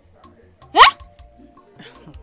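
A woman's short, sharp vocal exclamation rising steeply in pitch, about a second in, over quiet background music.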